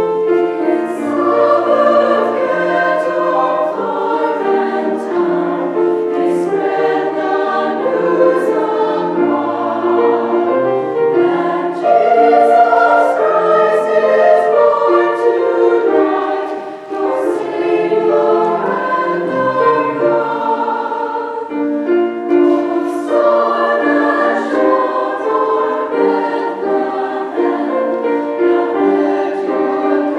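Mixed choir of men's and women's voices singing a piece in parts, holding sustained chords that move from one to the next. There is a brief break in the phrase about seventeen seconds in.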